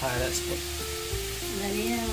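Onions and tomatoes frying in oil in a wok with spice powders, a steady sizzle, with held musical tones over it.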